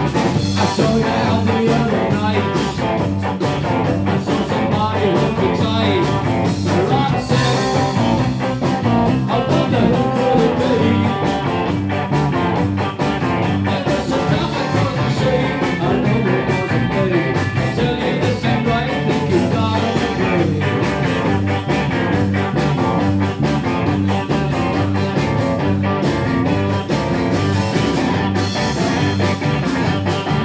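Live rhythm-and-blues rock trio playing: electric guitar, bass guitar and drums in a steady driving beat, with no singing heard.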